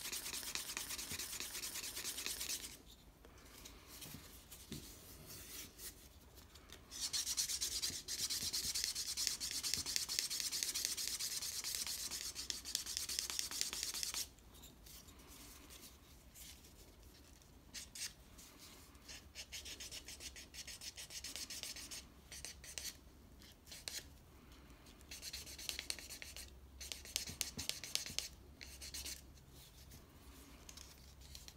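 Pine slicking stick rubbed rapidly back and forth along the edge of a leather strap, burnishing it so the fibres mat down slick and shiny. The rubbing is loud for the first few seconds and again for about seven seconds in the middle, then goes on quieter in shorter, broken strokes.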